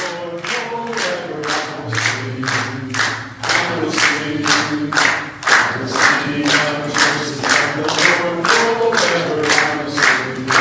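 A choir singing over a steady clapping beat, about two claps a second.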